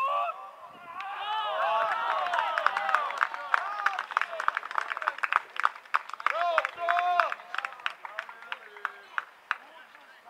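A flock of birds calling at once, many short rising-and-falling calls overlapping. The calls build up about a second in, are densest through the middle, and thin out over the last couple of seconds.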